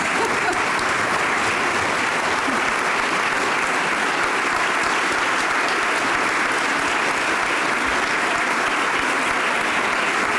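Audience applauding, many people clapping steadily and without a break.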